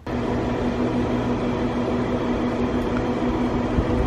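A machine running steadily: a constant hum over a rushing noise, starting suddenly and stopping just before the end.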